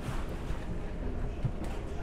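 Inside a passenger train coach slowing in a station: a steady low rumble of running noise, with a light knock about one and a half seconds in.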